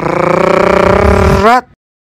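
Logo intro sting: a loud, drawn-out processed voice held on one pitch for about a second and a half, gliding up at the end and then cutting off suddenly.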